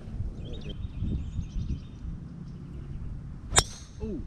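A golf club striking a ball on a tee shot: one sharp crack about three and a half seconds in.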